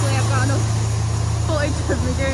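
A milk tanker's engine running at a steady idle, a low unbroken drone, while the tanker pumps milk in through its hose.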